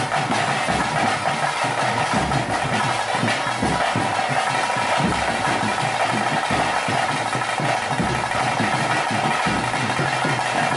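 Live ritual music for a bhuta kola dance: drums beating in a loose repeating rhythm under a steady, continuous drone from a wind instrument.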